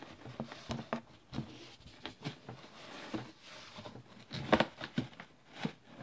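Groceries being rummaged and shifted inside a cardboard box: a string of light knocks and rustles, the loudest a sharp knock about four and a half seconds in.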